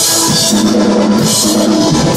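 Live rock band playing loud, in an instrumental passage without singing: drum kit with cymbals, electric guitars, bass and synth keyboard.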